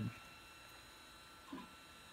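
Quiet room tone with faint steady high-pitched electrical tones, and one brief soft sound about one and a half seconds in.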